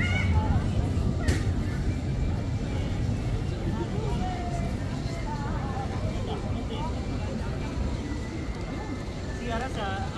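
Indistinct chatter of passing people in a crowd, several faint voices over a steady low rumble, with one short click about a second in.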